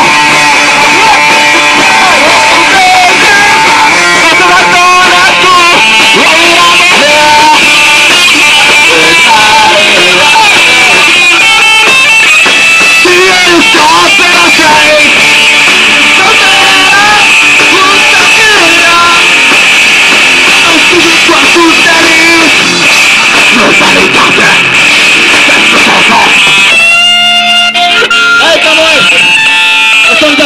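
Live punk rock band playing: electric guitar, drums and shouted vocals into a microphone. Near the end the full band drops out for a moment, leaving a few held notes, then comes back in.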